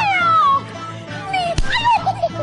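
Yue opera performance: high, wailing pitched cries slide downward, and a second one rises and falls near the end, over the stage accompaniment. A single sharp crack sounds about one and a half seconds in.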